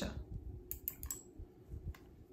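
A handful of light, quick clicks, about five in the second half, over a faint low rumble.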